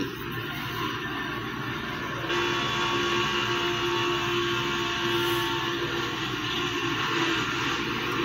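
Stock car engines at racing speed, heard from an in-car camera on a television broadcast and played through the TV's speaker: a rushing noise, joined about two seconds in by a steady, droning engine note.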